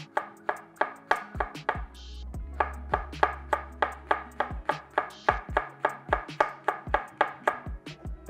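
Chef's knife slicing a jalapeño into thin rings on a wooden cutting board, the blade knocking on the wood in a quick, even rhythm of about three strokes a second, over background music.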